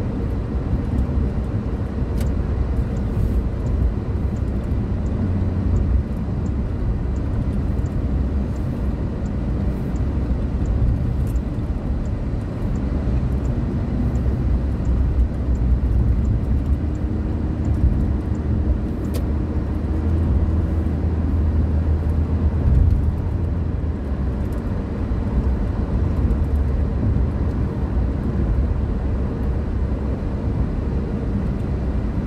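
Steady road and engine rumble heard from inside a moving car's cabin on a highway, mostly deep tyre and engine noise.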